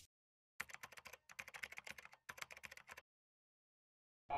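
Computer keyboard typing sound effect: a run of quick key clicks, about ten a second with a couple of short breaks, starting about half a second in and stopping about three seconds in.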